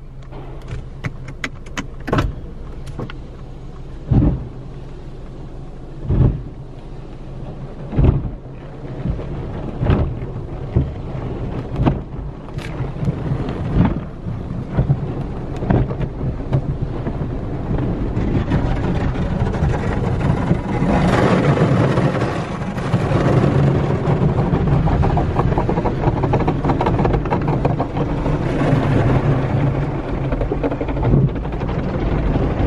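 Automatic car wash heard from inside the car: cloth wash strips thudding against the body about every two seconds over a steady low hum. From a little past halfway, a dense, louder hiss of water and foam spraying onto the glass takes over.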